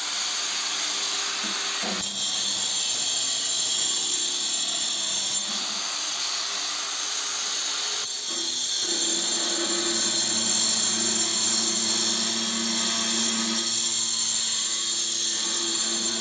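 Handheld angle grinder with a cutting disc running and cutting through a floor tile: a continuous high grinding whine. The tone shifts about two seconds in and again about eight seconds in, as the disc works into the tile.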